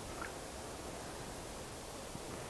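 Quiet, steady outdoor background hiss with no distinct sound event in it.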